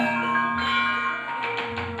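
Javanese gamelan accompaniment to wayang kulit: bronze metallophones struck with mallets, ringing on, with deep gong strokes about half a second in and again near the end.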